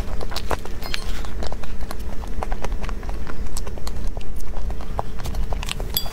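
Close-miked eating sounds of soft cream cake being chewed: a steady run of small, sharp, wet mouth clicks and smacks.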